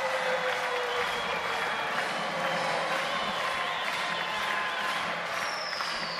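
Ballpark crowd cheering and applauding a home run, a steady even noise from a small crowd.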